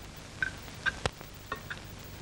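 Metal spoons clinking against china soup plates: about five short ringing clinks in under two seconds, over a steady background hum and hiss.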